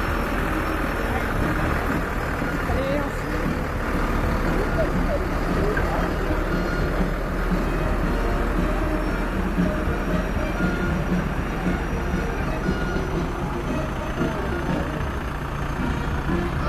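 Heavy Iveco fire truck with a diesel engine driving past, its engine running steadily, with voices from the crowd behind it.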